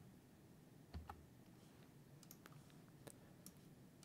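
Near silence with a few faint clicks from someone working a computer, one a little louder with a soft low bump about a second in, the rest scattered and fainter.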